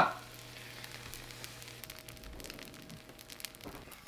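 Fried rice sizzling faintly in a nonstick frying pan, with light crackles, as it is stirred with a wooden spatula. A low steady hum stops about halfway through.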